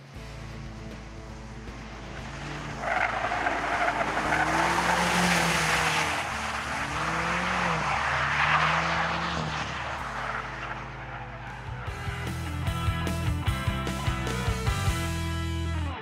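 BMW X6 M's twin-turbo V8 revving up and down as its tyres spin and slide on wet concrete, with a rush of tyre and spray noise. Music plays underneath and takes over near the end.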